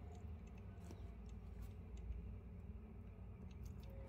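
Faint, scattered small clicks of glass seed beads and a beading needle being handled during peyote stitching, over a low steady hum.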